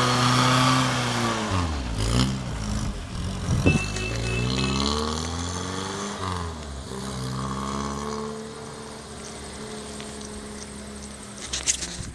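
1964 Austin Mini Moke's A-series four-cylinder engine pulling away and revving up through the gears, its pitch dropping at two gear changes about 2 and 6½ seconds in, and growing fainter as it drives off.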